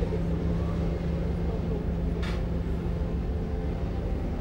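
Waterfront outdoor ambience: a steady low rumble with a continuous low hum, and a brief hiss a little past halfway.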